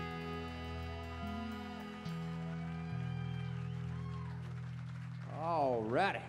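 Live band holding its final chord, with steady sustained tones while the bass notes shift beneath. Near the end a voice comes in loudly, wavering widely in pitch.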